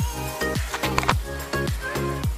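Background music with a steady beat: a repeating kick drum under sustained melodic tones.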